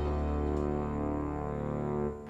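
Background music score: a held low chord with softer higher notes drifting over it.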